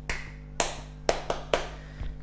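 About five sharp taps or snaps, irregularly spaced across two seconds, each dying away quickly, over a faint steady low hum.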